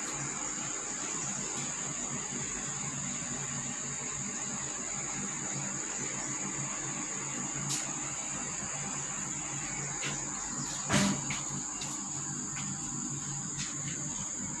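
Steady high-pitched insect drone over a low background hum, with one sharp knock about eleven seconds in.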